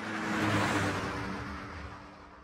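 Logo-sting sound effect: a whoosh that swells to a peak about half a second in, then fades slowly, with a steady low tone underneath.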